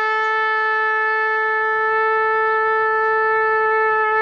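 Ram's horn shofar blown in one long, steady note held at the same pitch.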